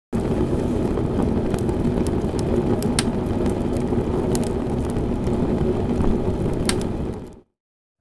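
Channel-logo intro sound effect: a steady, dense rumble with scattered sharp crackles that fades out near the end, followed by a moment of silence.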